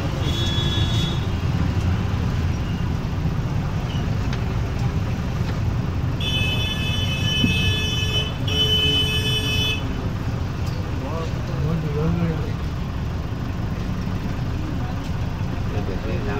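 Street traffic: vehicle engines running with a steady low rumble, a short horn beep near the start, then a high-pitched vehicle horn sounding twice in a row around the middle, each blast a second or more long.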